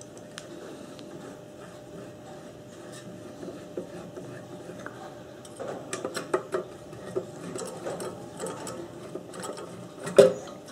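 Small metallic clicks and scrapes of a hand tool loosening the screws that hold the fuel tank on a Briggs & Stratton vacuum jet carburettor. The sound is light handling noise at first, then a busier run of quick clicks from about halfway in.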